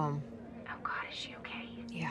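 Speech: a spoken word ends, then faint whispered speech, with a low steady tone coming in about halfway through.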